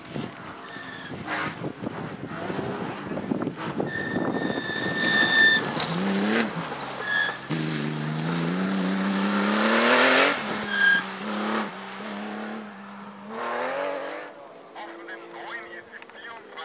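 Rally car engine driven hard on a gravel stage, with gravel and tyre noise. About six and a half seconds in the revs drop at a shift, then climb steadily for about three seconds before easing to a steady note, and rise once more briefly near the end. A few short high-pitched squeals cut through along the way.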